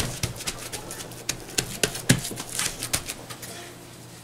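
Seasoning shaker shaken over a raw brisket: a quick, irregular run of sharp clicks and rattles that stops about three and a half seconds in.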